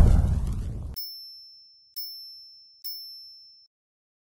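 Logo sting sound effect: a loud rushing sound with a deep rumble that cuts off suddenly about a second in, followed by three short, high-pitched dings about a second apart, each fading away.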